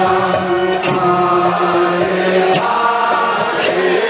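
Kirtan: chanting of a mantra to music, in long held notes, with a few bright cymbal-like strikes.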